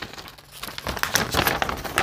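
A folded glossy paper poster being unfolded and handled, crinkling and rustling in a quick run of irregular crackles that starts about a second in.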